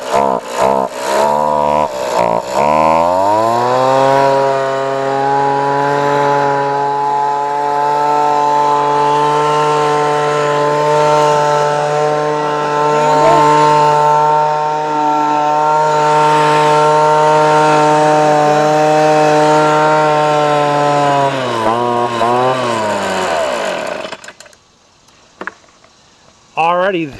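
Ryobi handheld two-stroke gas leaf blower running. It idles unevenly for the first couple of seconds, revs up to a steady full-throttle drone about three seconds in, drops back around twenty-one seconds in and shuts off a couple of seconds later. It has just had new fuel lines fitted, and the owner thinks it probably needs a carburetor overhaul.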